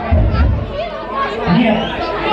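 A man's voice talking through a microphone and PA system in a large hall, over the chatter of a crowd around him.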